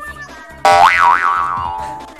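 A cartoon 'boing' sound effect: a sudden bright pitched tone about half a second in that wobbles up and down in pitch twice, then fades out over a second or so.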